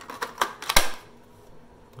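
Ryobi One+ 18V 5.0 Ah battery pack slid onto the handle of a cordless reciprocating saw: a quick run of plastic clicks and scrapes in the first second, ending in one loud click as the pack latches home.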